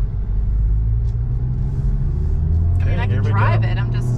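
Honda Civic Type R's turbocharged four-cylinder engine and road noise heard from inside the cabin as a steady low drone while the car drives along in a low gear.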